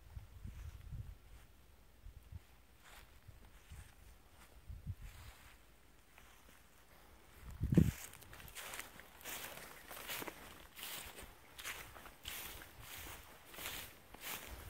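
Footsteps crunching through tall dry grass and weeds, about two steps a second, starting about halfway through after a single low thump. Before that, only faint low rumbling.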